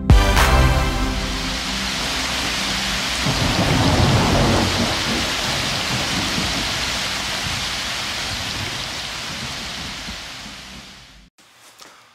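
Thunderstorm: a sudden thunderclap, then steady rain with a rolling rumble of thunder about four seconds in, fading away near the end.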